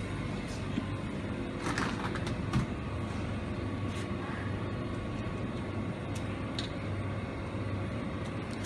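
Steady low hum of a supermarket's refrigerated display cases and ventilation, with a faint steady tone in it, and a few faint clicks and knocks of packages being handled on the shelves.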